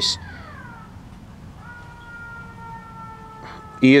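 Distant emergency-vehicle siren, faint: one falling wail in the first second, then a steady held tone from about a second and a half in until just before the end.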